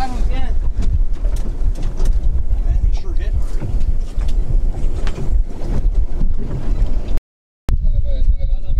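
Open-boat ambience dominated by a heavy low rumble of wind on the microphone, with faint voices and a few light clicks. The sound cuts out completely for about half a second near the end.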